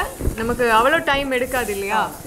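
A person's voice talking, with a faint sizzle from diced carrots and green peas frying in a steel pot as they are stirred.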